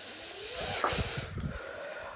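Handling noise from a handheld phone camera being carried while walking: a steady hiss with a few soft, low footstep-like thumps in the middle.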